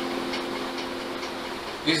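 Electronic keyboard chord, F major voiced A–F–C (a drop-2 voicing), held and slowly dying away with no new notes struck. A man's voice starts just at the end.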